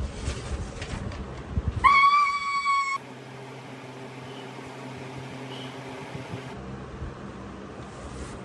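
Paper packaging rustling and crinkling as a box is torn open, then about two seconds in a loud, high held tone lasting about a second that cuts off suddenly, leaving a faint steady low hum.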